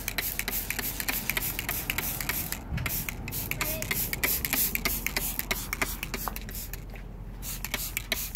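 Hand-held spray bottle misting liquid onto foliage: a run of rapid spritzes and hiss, with short breaks about three seconds in and again about seven seconds in.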